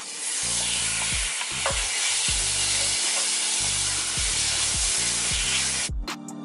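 Seasoned chicken pieces frying in oil in a hot cast-iron skillet, a steady sizzle, as they are pushed around the pan with a wooden spatula.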